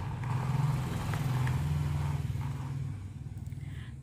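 Low, steady engine hum of a motor vehicle running in the background, fading away near the end.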